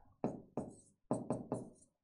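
A pen writing on the board: about five short, sharp taps and strokes as characters are written, clustered in the first second and a half.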